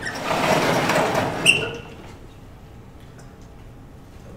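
A vertical sliding chalkboard panel being pushed up along its frame: a noisy slide lasting about a second and a half that ends in a sharp knock as the panel stops.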